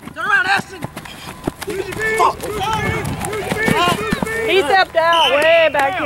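Men's voices shouting and calling out on a playing field, several overlapping, with a few short knocks in between.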